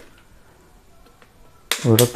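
Faint plastic clicks of a handheld electric blower's trigger and trigger-lock button being pressed, with a sharper click near the end just as talking resumes; the motor is not running.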